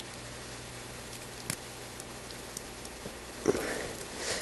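Faint scattered clicks and light scraping of an X-Acto knife shaving plastic from a Rubik's cube corner piece, with a little rustling near the end, over a low steady hum.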